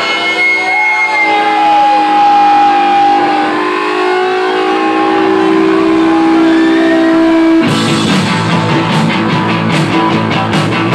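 Live garage-rock band starting a song: an electric guitar holds long ringing notes, some sliding in pitch. About three-quarters of the way in, drums and the full band come in loud and fast.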